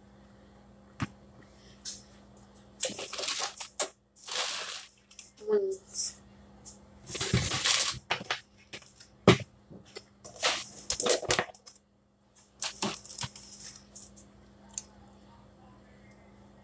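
Kitchen items being handled: a run of knocks, clatters and crinkly rustles in uneven bursts, with one sharp knock about two-thirds of the way through.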